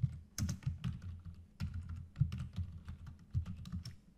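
Computer keyboard typing: a run of uneven keystrokes.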